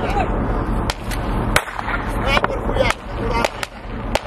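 Scattered gunshots in a firefight: several sharp single cracks at irregular intervals, the strongest about a second and a half in.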